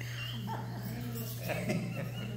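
Soft laughter, short high squeaky chuckles in reaction to a joke.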